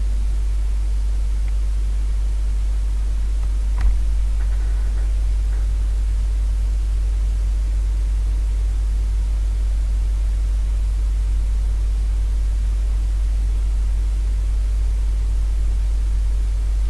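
Steady low electrical hum with faint hiss: the recording's own noise floor, with no other sound except a single sharp click about four seconds in.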